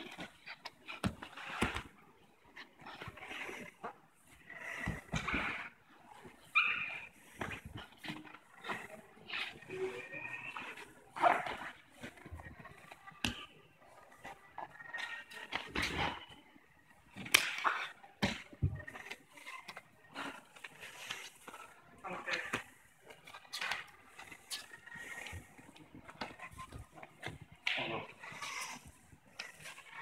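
Grappling on tatami mats: bodies and clothing scuffling and shifting, with irregular sharp thumps of limbs and bodies against the mat. Brief grunts or voices come in between.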